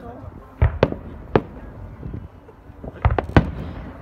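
Aerial fireworks shells bursting overhead: sharp bangs in quick succession just over half a second in, another about a second later, and a rapid group of three around three seconds in, over a low rumble.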